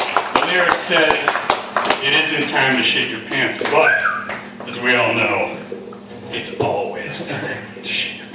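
Voices talking in a small room, with a quick run of sharp clicks during the first two seconds.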